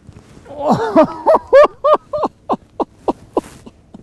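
A man laughing: a run of about ten short "ha" pulses starting about half a second in and fading over two seconds.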